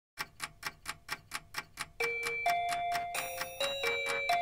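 Clock ticking as the intro of a pop song, about four ticks a second, joined about two seconds in by a slow line of held, bell-like notes over the continuing ticks.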